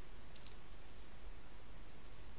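Steady low hiss of microphone room tone, with one faint short click about half a second in.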